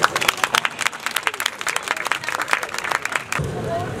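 Audience applauding with a round of distinct hand claps that stops about three and a half seconds in.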